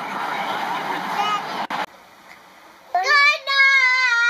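Rushing wind and road noise of a moving car, which cuts off abruptly a little under two seconds in. After a short quiet, a young child's voice starts near the end, drawn out and sing-song, its pitch slowly falling.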